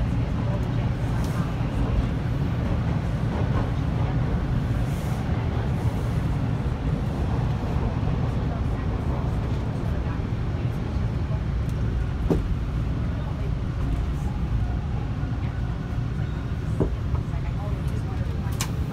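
Steady low rumble of a TTC subway train, heard from inside the crowded car, with indistinct passenger chatter and a couple of short clicks near the middle and end.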